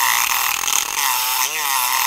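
Multipick Kronos electric pick gun running, its vibrating blade striking the pin stacks inside an ABUS Titanium padlock with security pins: a loud, steady buzz as the gun electro-picks the lock under moderate tension.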